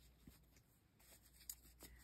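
Near silence: room tone with a faint low hum, and a couple of faint ticks about a second and a half in.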